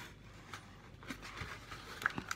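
Faint handling of a cardboard advent calendar: fingers on the card, with a few soft ticks.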